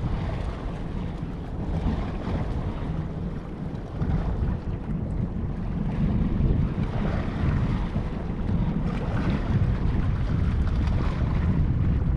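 Wind buffeting the microphone in gusts, a low rumbling noise that grows louder after the first few seconds.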